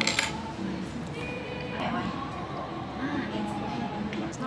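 Café background of people talking, with background music; a short clink just after the start.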